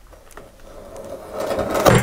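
A large kitchen knife sawing through the plastic string tied around a cardboard parcel, the rasping growing louder until a sharp sound near the end as the string gives way.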